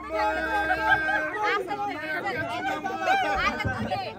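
Several people talking and calling out over one another. One voice holds a long, drawn-out note for about the first second.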